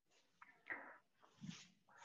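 Near silence, broken by two faint, short breathy vocal sounds from a person, such as a breath or a murmur, about half a second apart.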